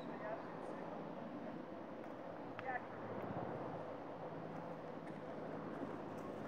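Faint, steady outdoor background noise, with a couple of brief faint voice sounds, the clearest about two and a half seconds in.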